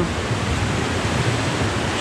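Steady rushing noise of an indoor swimming pool hall, with water churned by swimmers swimming lengths.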